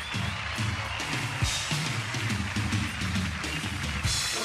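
Rock band playing an instrumental passage with no singing, led by a drum kit with a steady beat under electric guitar.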